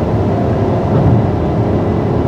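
Peugeot 5008's 1.2-litre turbocharged three-cylinder petrol engine pulling under acceleration, heard from inside the cabin together with steady road and tyre noise.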